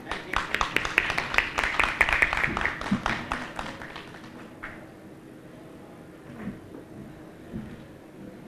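Audience applause: a small crowd clapping, the separate claps clearly distinct, thinning out and dying away about four seconds in.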